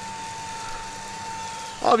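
Fanttik V10 Apex cordless handheld vacuum running in its regular (non-boost) mode: a steady whine over the rush of air through the nozzle.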